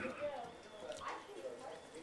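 Faint, indistinct voices with a few light clicks.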